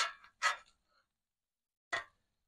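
Near silence, broken by two brief noisy sounds in the first half second and another just at the end, with no griddle sizzle audible.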